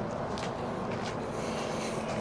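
Steady outdoor background hum with a few soft footstep scuffs on asphalt as the camera operator steps backward.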